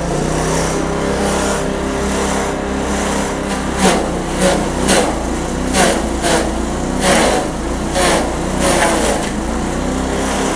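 Engine-driven multifunction chopper running under load, shredding a coconut frond: a steady engine hum with the blades' sharp chops recurring every half second to a second from about four seconds in as the frond is pushed in.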